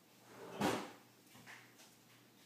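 A single short thump or knock a little over half a second in, followed by two faint clicks.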